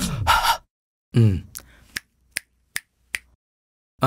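A man snapping his fingers five times in an even rhythm, about two to three snaps a second, just after a short voiced sound from him.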